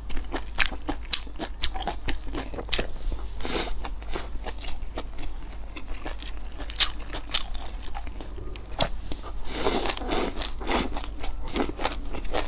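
Close-miked eating sounds of a person chewing rice and stir-fried noodles: many short wet clicks and smacks of the mouth, with a longer, louder noisy stretch about ten seconds in.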